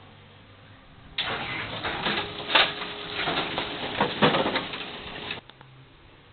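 Brunswick GS-X pinsetter started up in diagnostic mode: machine noise with knocks and a faint steady hum starts suddenly about a second in, runs for about four seconds and cuts off suddenly. The transport band drive belt is not fitted, so the transport band is not moving.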